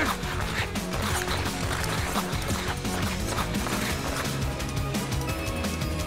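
Background music from a cartoon action scene, with short sound-effect hits repeated over it.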